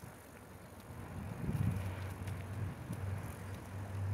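Garbage truck's engine as it approaches down the street: a low, steady hum that comes in about a second and a half in and grows louder.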